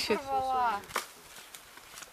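A person's voice speaking quietly for the first second, a single sharp click about a second in, then quiet outdoor background.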